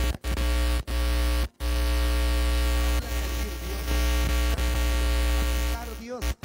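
Loud, distorted sustained keyboard drone through a buzzing PA system, over a heavy low hum. The sound cuts out sharply three times in the first second and a half.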